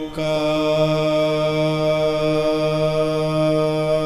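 Sikh kirtan: a steady, held chord with a sustained chanted note over it, after a brief break at the very start.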